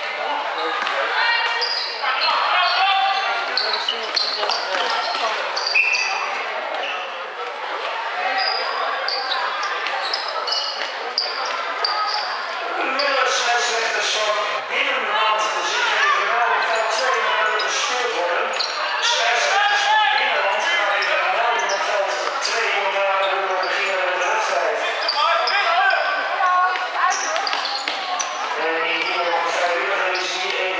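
Basketball bouncing on a sports-hall court amid indistinct shouting from players and onlookers, echoing in the large hall, with short high squeaks now and then.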